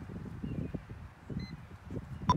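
Wind rumble and handling noise on the microphone, with soft knocks as the buttons of a 3M Dynatel 7550 cable locator are pressed. A short faint beep from the locator comes about one and a half seconds in.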